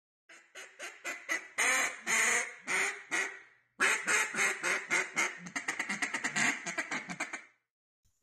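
A flock of ducks calling overhead: many short quacks in quick, overlapping series, with a brief pause about three and a half seconds in, stopping shortly before the end.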